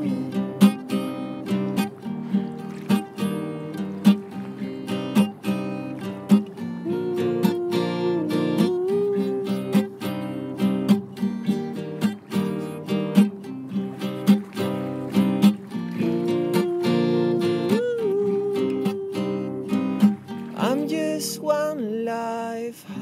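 Instrumental passage of an acoustic song: strummed acoustic guitar chords in a steady rhythm, with a sustained melody line above them that slides between notes.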